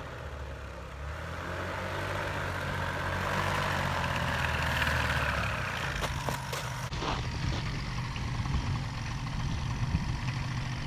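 Paramotor engine and propeller running as the paramotor comes in to land, growing louder to a peak about five seconds in. The propeller rush then drops away as the pilot touches down, leaving the engine idling, with a few knocks.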